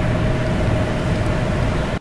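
Steady road and engine noise of a moving car, a loud even rush with a faint constant hum, cutting off suddenly at the end.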